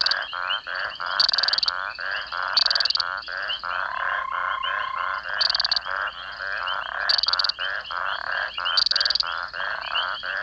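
A chorus of frogs calling at a breeding pond: many fast, pulsing calls overlap without a break. Short, sharp, high-pitched calls stand out every second or two, and a brief steady note is heard for about a second near the middle.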